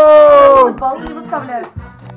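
A long, loud note sung into a karaoke microphone, held steady and ending with a downward slide about two-thirds of a second in, followed by quieter talk.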